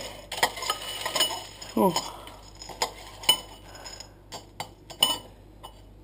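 Metal spoon stirring cereal in a ceramic bowl, clinking against the bowl in irregular taps.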